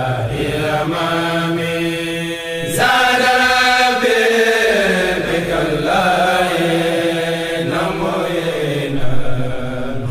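Unaccompanied male chanting of a Mouride khassida, an Arabic religious poem, sung in long, drawn-out melismatic notes. A new, stronger phrase comes in about three seconds in.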